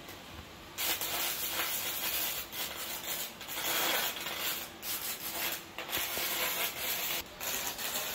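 Electric arc welding on a steel I-beam: an uneven crackle that starts about a second in and keeps going, with a few brief breaks.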